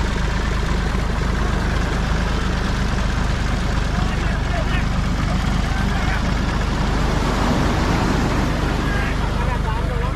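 A tractor engine running steadily, with surf washing on the beach and men's voices calling now and then.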